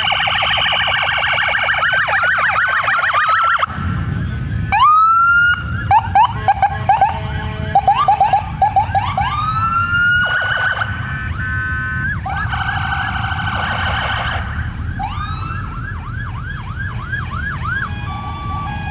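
Police car sirens sounding as the vehicles pass, switching between patterns: a fast yelp, a long rising wail about five seconds in, then choppy chirps and a fast yelp again near the end. Car engines and tyres rumble underneath.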